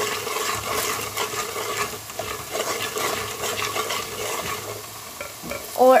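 A spoon stirring and scraping a masala of ginger-garlic paste, red chilli powder and salt around a pan as it sizzles and fries in oil, in short repeated strokes.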